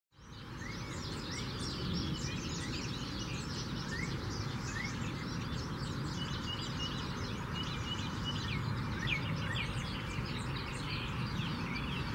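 Several small wild birds chirping and calling at once, with a few short rising whistles and a quick run of repeated notes midway, over a steady low background rumble. The sound fades in right at the start.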